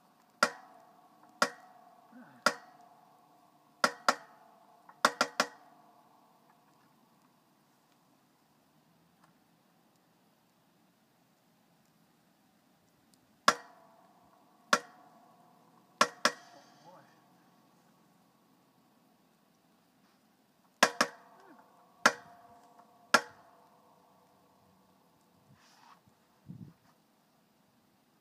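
Hand-pumped hydraulic log splitter being worked: sharp metallic clicks, each with a short ringing after it, coming about a second apart in three runs with pauses between, as the wedge is pressed into a big log that has not yet split.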